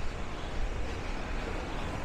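Street traffic noise: a steady low rumble with an even hiss above it.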